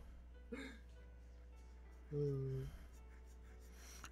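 A person's brief vocal sound about half a second in, then a short, steady hum at one pitch lasting just over half a second, a little past two seconds in.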